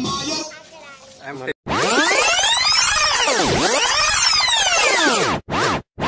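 Song music fades out and, after a brief gap, an electronic sweep sound effect plays for about three and a half seconds: many layered pitches glide down and then back up. It cuts off and is followed by two short bursts of the same effect near the end.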